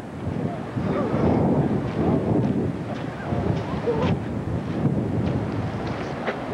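Wind buffeting a camcorder's microphone, a rough, steady rush that sits mostly low.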